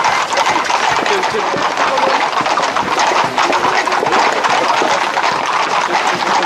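Hooves of a tight pack of Camargue horses on a dirt track, many overlapping hoofbeats in a dense, continuous clatter.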